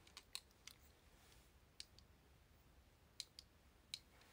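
Near silence with a few faint, sharp clicks scattered through it: a small cluster in the first second, one near two seconds, and a pair a little after three seconds.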